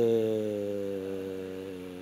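A man's drawn-out hesitation sound, a single low 'euhh' held at one steady pitch for about two seconds and slowly fading: a filled pause in the middle of his answer.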